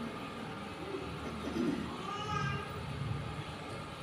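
A pause in the talk: faint, distant voices murmuring over room tone, a little more noticeable around the middle.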